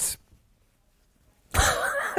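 A man's stifled laughter breaking out after a pause, starting with a sudden cough-like snort about one and a half seconds in.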